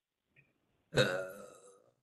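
A single drawn-out spoken 'uh', a hesitation that starts about a second in and trails off, heard over a video call.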